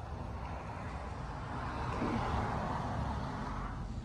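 A car passing on the street, its noise swelling and fading over a couple of seconds above a low outdoor rumble.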